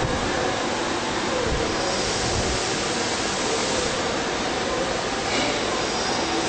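Carbide tool grinder's wheel grinding a carbide woodworking cutter: a steady, even hiss.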